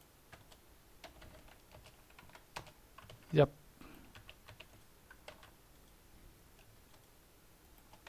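Light, irregular keystrokes on a computer keyboard, a few clicks a second, thinning out in the last couple of seconds.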